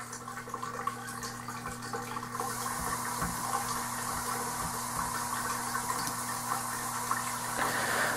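A steady rushing noise like running water over a low electrical hum. The rushing grows louder about two and a half seconds in and then holds steady.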